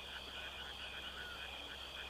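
Faint, steady chorus of frogs croaking in the night.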